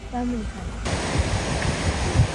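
Small roadside waterfall rushing steadily, starting abruptly about a second in, with wind buffeting the microphone in low rumbles.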